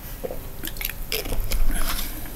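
A scatter of small clicks and rustles close to the microphone, loudest about one and a half seconds in.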